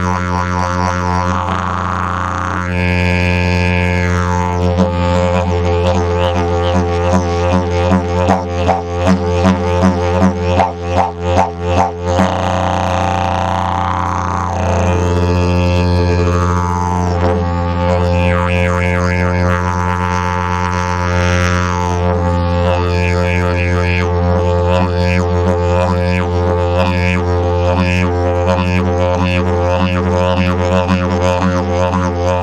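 Frank Thill "Omega Drone" eucalyptus didgeridoo played as one unbroken low drone, its overtones sweeping up and down as the player shapes the sound with his mouth. A fast rhythmic pulsing comes in midway and lasts a few seconds before the steady drone returns.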